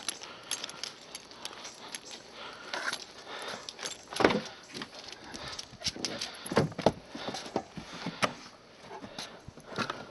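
Knocks, clicks and rustling as a dog gets into a car through its open door, with a loud knock about four seconds in and further knocks near seven and eight seconds.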